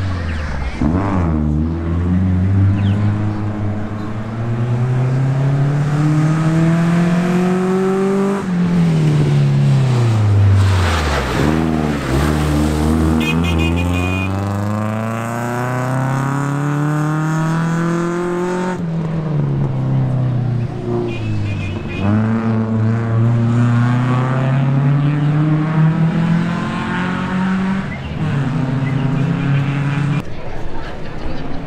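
Rally car engine revving hard under full acceleration, its pitch climbing through each gear and dropping sharply at each of several upshifts.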